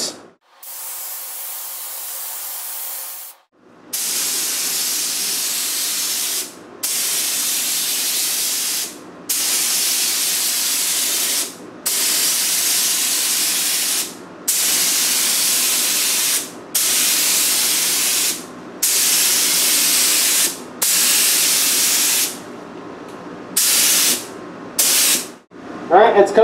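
DeVilbiss FLG-4 gravity-feed spray gun hissing as the trigger is pulled, first in a quieter blast of air alone to blow dust off the panel. Then come about ten passes of red base coat, each burst of spray lasting about two seconds with short pauses between, the last few shorter.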